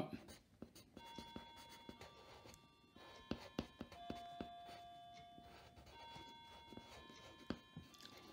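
Faint scratching and ticking of a graphite sketching pencil on paper as short strokes are drawn, with a few sharper ticks in the middle. Faint held musical tones sound behind it, changing every second or two.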